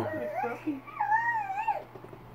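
A dog whining: a high, wavering whine that rises and falls for about a second and a half, then stops.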